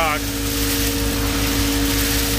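Concrete pump truck running steadily while it works a load through its hopper: a constant engine and hydraulic drone with a steady hum.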